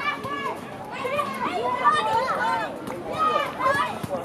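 Several young voices shouting and calling over one another during a youth soccer match, with no single clear speaker.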